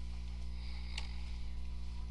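Steady low hum with one sharp click about a second in.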